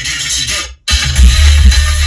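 Electronic dance music playing loud through a car stereo, with heavy bass from a Sony Xplod bass tube subwoofer filling the cabin. The music cuts out briefly just before a second in, then comes back with strong bass hits.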